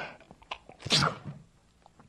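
An old man draws a breath and sneezes once, about a second in.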